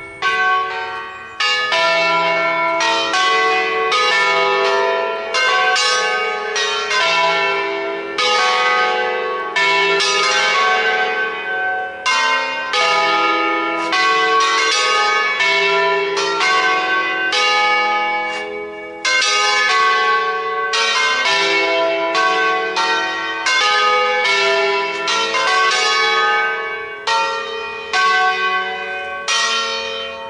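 Church bells rung in a solemn concerto: several bronze bells swung on wheels, some up to the mouth-up position, strike in quick melodic sequences. Their notes overlap and ring on, with only brief dips.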